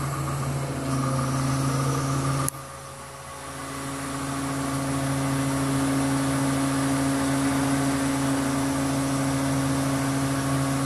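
Mobile crane's engine running steadily, heard from inside the operator's cab while it holds a one-ton load on the hook. About two and a half seconds in there is a click, the engine sound drops suddenly, and then it builds back up over a couple of seconds.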